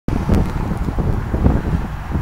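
Wind buffeting the tablet's microphone, an uneven low rumble that swells and fades, over the sound of road traffic.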